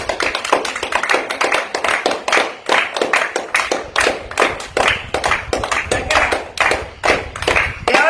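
A small group of people clapping by hand, with quick, uneven, overlapping claps that keep going without a break.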